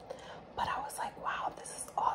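A woman whispering, a few breathy unvoiced syllables with no clear words.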